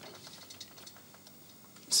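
Faint small scrapes and clicks of a table knife spreading butter on a slice of bread.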